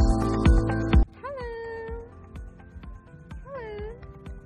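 Electronic background music with a steady beat plays loudly, then drops much quieter about a second in. Over the quieter music a goat bleats twice: a drawn-out call that rises and then holds, and a shorter one near the end.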